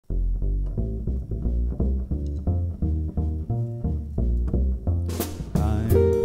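Upright double bass plucked pizzicato, walking a steady swing bass line on its own. About five seconds in, cymbals and a guitar come in on top of it.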